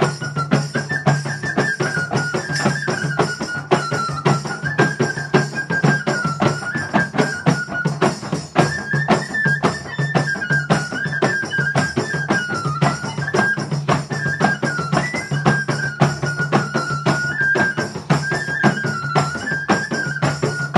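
A small flute playing a Kodava folk tune in short, repeating phrases over hand drums and frame drums that keep a fast, steady beat.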